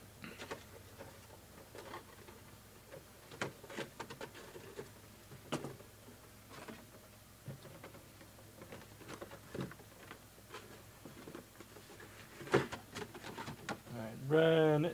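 Faint handling noises: scattered light clicks and rustles of items being handled on a table, with a louder cluster of clicks near the end.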